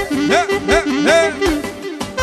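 Clarinet playing fast Albanian folk-dance phrases made of repeated swooping glissandi, each note bending up and falling back, over electronic keyboard accompaniment holding a steady note.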